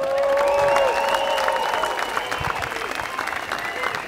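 Audience applauding, with a few steady held tones sounding over the clapping for the first couple of seconds; the applause eases off slightly toward the end.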